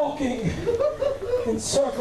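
Speech only: a man's voice through a microphone, with no other sound standing out.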